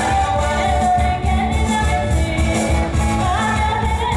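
Live pop band playing with a woman singing lead, over guitars and bass with a steady pulsing beat.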